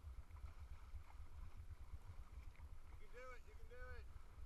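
Faint low steady rumble, with two short pitched vocal calls near the end, each about half a second, rising and then falling in pitch.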